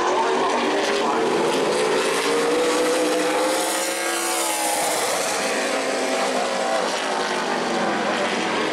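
Super late model stock car's V8 engine running at full speed on a qualifying lap. Its pitch climbs as it comes close, peaks about four seconds in as it passes, then falls away.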